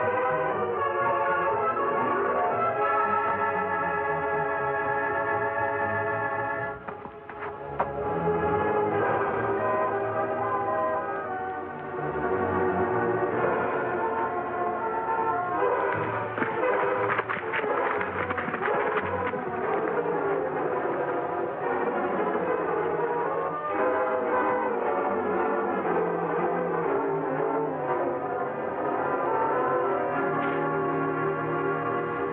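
Orchestral background score led by sustained brass chords, with a brief lull about seven seconds in.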